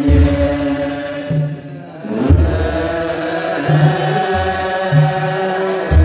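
Ethiopian Orthodox clergy chanting wereb together, a massed group of men's voices holding long, slowly moving notes, with deep beats every second or two and a brief drop in level shortly before the middle.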